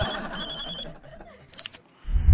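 Mobile phone ringing: an electronic ringtone of rapid high beeps in two short bursts in the first second, over a rushing hiss.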